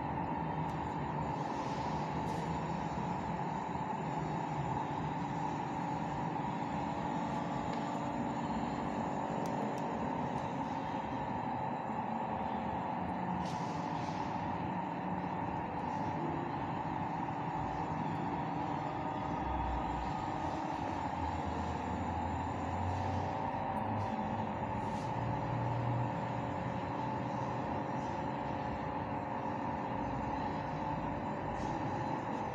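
A steady background hum with several held tones, likely ventilation or air conditioning, with a few faint low thuds about two-thirds of the way through.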